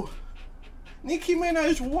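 A man's drawn-out, high-pitched vocal 'ooh' of reaction, starting about a second in and wavering slightly in pitch.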